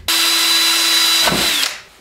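Cordless drill with a 3/32-inch bit running steadily as it drills a hole in the throttle arm of a Honda GX200 engine, starting abruptly, then winding down and stopping near the end.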